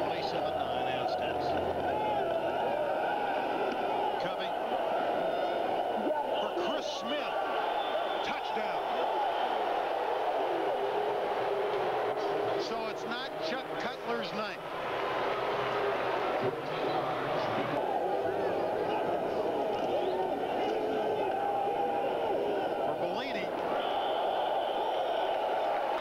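Stadium crowd noise: many voices at once in a steady din, dipping briefly about fourteen seconds in.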